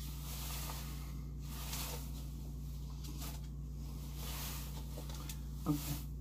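Faint rustling and handling of sample packets being pulled from a box, a few soft scuffs over a steady low hum.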